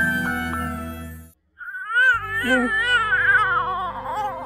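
Theme music with chiming bell-like notes plays and stops about a second in. After a brief silence, an infant starts crying, a high wavering cry over a low, steady music bed.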